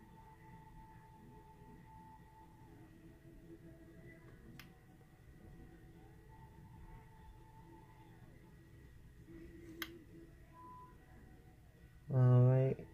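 Near silence: room tone with faint steady tones and two small clicks about five seconds apart, the second a little louder.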